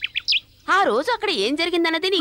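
Birds giving a few short, quick high chirps in the background, followed by a person speaking.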